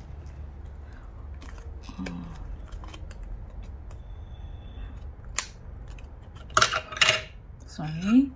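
Scissors snipping through thin cardboard from a toilet roll core, a few crisp cuts with the loudest near the end, among small clicks of the piece and its binder clips being handled.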